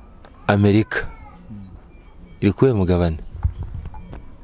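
A person's voice: two short vocal sounds with no recognisable words, the first about half a second in and the second, slightly longer, at about two and a half seconds, with quiet in between.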